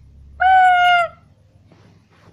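A child's voice holding one high note for under a second, steady in pitch and dipping slightly at the end.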